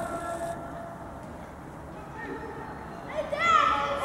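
High-pitched young voices calling out across a football pitch, with one loud rising-and-falling shout a little after three seconds in.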